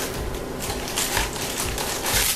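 Cardboard blind boxes being opened and the foil bags inside being pulled out: irregular rustling and crinkling with small clicks.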